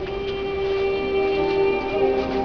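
A woman singing live with musical accompaniment, holding one long steady note that gives way to a new phrase near the end.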